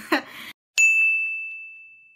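A single bright, bell-like ding sound effect strikes about a second in and rings out, fading away over about a second and a half. It marks a section title card. A short laugh comes just before it.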